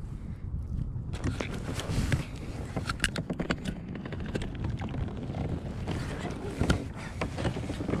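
Light water splashing and scattered knocks as a bass is held at the surface beside a kayak for release, over a steady low rumble of wind on the microphone.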